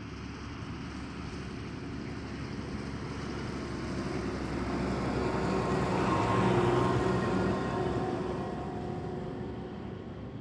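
Fendt 1000-series tractor pulling a grain cart drives past: engine and running gear grow louder to a peak about six and a half seconds in, then fade as it moves away, dropping slightly in pitch as it goes by.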